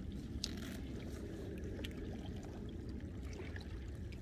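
Low steady rumble of wind and small waves lapping at a rocky shoreline, with a faint brief scrape about half a second in and a few light ticks as a metal fishing lure is worked free of a fish's mouth.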